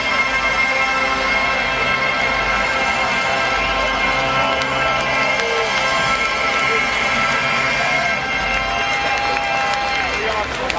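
Loud concert music over a PA, mostly sustained held chords, with a crowd cheering and shouting.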